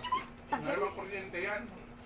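A person's voice making short wordless sounds with a wavering pitch, quieter than the talk around it, over a faint steady hum.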